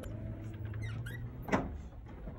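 Glass shop entrance door squeaking as it is pushed open, then a sharp clunk about one and a half seconds in.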